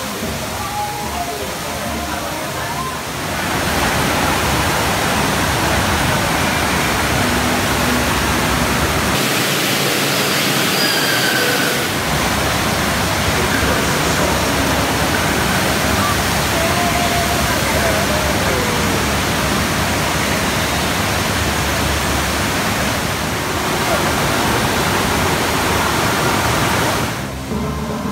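Loud, steady rushing water from a surf-simulator ride, where pumps drive a thin sheet of water fast up a padded slope. It starts about three seconds in and stops shortly before the end.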